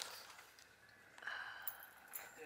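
Faint puffs of air from a beekeeper's bellows smoker being pumped to drive smoke toward a hive.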